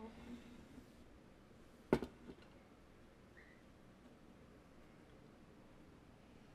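A single sharp knock of a hard object on the kitchen counter about two seconds in, followed by a couple of lighter taps, over quiet room tone.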